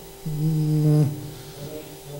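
A man's drawn-out hesitation hum held on one flat pitch for just under a second, then a fainter one near the end: thinking sounds while he tries to recall a name.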